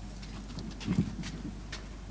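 Quiet room noise of a crowded hall over a steady low hum, with scattered light clicks and knocks and one short, louder knock about a second in.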